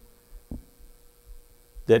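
A faint steady hum fills a pause in a man's speech, with one soft short thump about a quarter of the way in.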